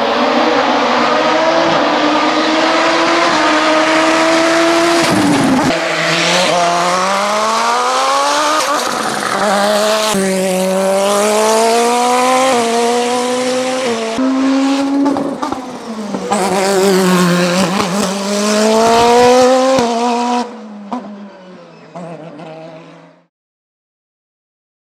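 Osella PA 2000 Turbo sports prototype's turbocharged engine under hard acceleration up a hill climb. Its pitch climbs through each gear and drops sharply at every shift, about six times. It is loud until about 20 seconds in, then fades and stops suddenly near the end.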